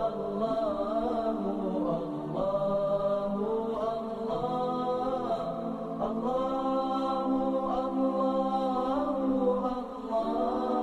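Background vocal music: chanting voices holding long notes that glide up and down.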